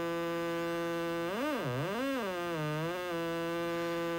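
Behringer Neutron synthesizer's digital LFO run at audio rate as a third oscillator, through an attenuator into the VCA: a steady tone rich in harmonics. About halfway through it swoops down in pitch and back up twice, then holds steady again.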